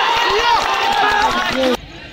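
A crowd of football spectators shouting at once, many voices overlapping loudly, cutting off suddenly near the end.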